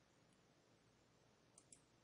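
Near silence, with one faint mouse click near the end.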